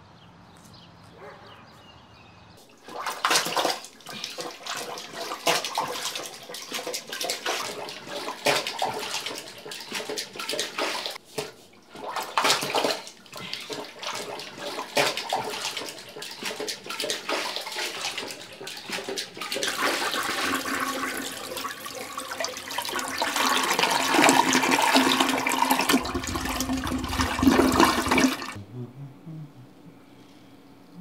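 Water rushing and splashing, starting about three seconds in and swelling toward the end, with a deep rumble just before it cuts off suddenly.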